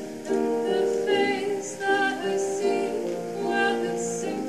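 A song from a stage musical: a voice singing a lament over instrumental accompaniment.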